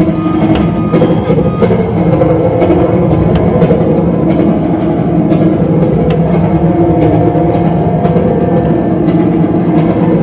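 Live instrumental music played on amplified guitars: a slow, dense texture of sustained low notes.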